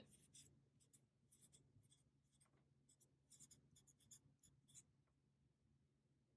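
Faint scratching of a felt-tip permanent marker writing on paper: a string of short, irregular strokes that stop about five seconds in.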